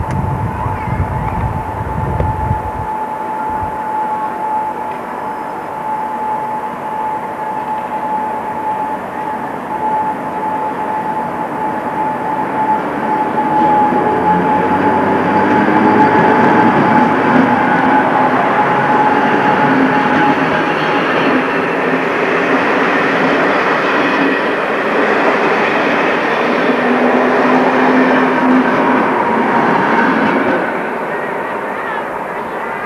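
Electric multiple unit pulling out and running past close by, getting louder from about halfway through as its coaches pass. A steady high whine runs through the first two-thirds.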